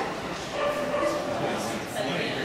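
A dog whining and yipping, with people talking in the background.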